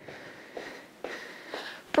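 A woman breathing in and out while doing dumbbell side steps, with a few soft thuds from her steps on the floor.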